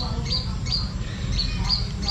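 A small bird calling over and over in short, high chirps, about three a second, over a steady low rumble.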